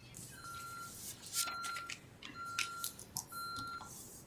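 Security alarm keypad beeping during its exit delay after being set to 'armed away': a short steady beep repeating evenly about once a second, four times, with faint paper rustles and clicks in the room.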